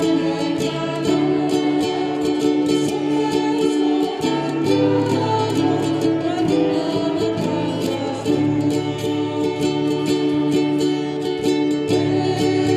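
A live hymn with strummed acoustic guitar and a smaller ukulele-sized string instrument, and women's voices singing long held notes over a steady low bass line.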